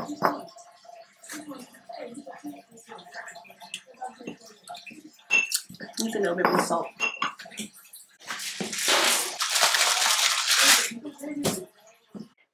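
Ceramic pestle clicking and scraping against a white ceramic mortar as an oily herb-and-garlic seasoning paste is mixed. About halfway there is a short vocal noise, and later a long hiss lasting about two seconds.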